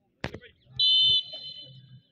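A referee's whistle gives one short, shrill blast about a second in and then trails off, signalling that the penalty can be taken. There is a sharp click just before it.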